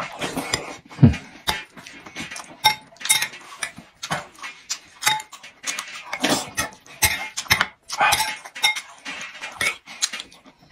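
Close-up eating sounds: slurping and chewing spoonfuls of rice and frozen tofu in broth, in quick irregular bursts, with a metal spoon clinking against a ceramic bowl.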